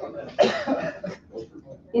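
A person coughing once, sharply, about half a second in, with faint voices in the room after it.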